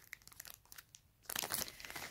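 Plastic packaging of a pack of pencils crinkling as it is handled: a few light crackles at first, then a denser burst of crinkling in the second half.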